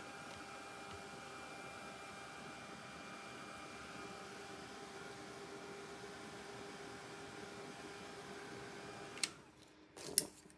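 Handheld blow dryer running steadily with a faint whine, drying acrylic paint on a stencilled board. It is switched off with a click near the end.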